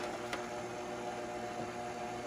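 KitchenAid Artisan stand mixer running at its lowest speed, driving the meat-grinder and sausage-stuffer attachment with a steady hum. A faint click comes about a third of a second in.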